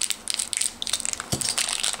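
Clear plastic candy bag crinkling and crackling as it is slit open with a small knife and handled, with a soft knock a little past halfway.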